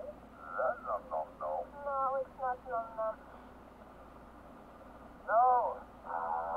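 Film dialogue with its lows and highs cut away, so it sounds thin: a few short spoken lines in the first three seconds, a pause, then one more short word near the end.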